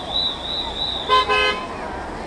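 A car horn sounds two short toots about a second in. Before the toots a high, wavering whistle runs, over the hiss and crackle of a firework display.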